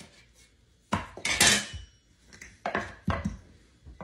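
A small wooden rolling pin rolling out dough on a wooden countertop: several short spells of rumbling and rubbing with knocks of the pin against the wood, the loudest about a second in.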